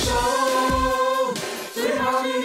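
A Mandarin pop song: a singer holds a long note on the word "人生" ("life") over the backing music, which drops away briefly near the end before the next sung line begins.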